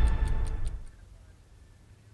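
The tail of a news programme's theme music, with a ticking-clock effect at about five ticks a second, fading out about a second in.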